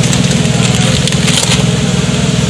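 A vehicle's engine running with a steady low rumble, heard from inside the cabin.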